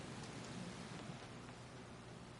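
Faint, steady hiss of room tone in a meeting hall, with no distinct event.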